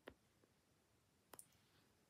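Near silence with two faint clicks about a second and a half apart, from a fingertip tapping and scrolling on the touchscreen.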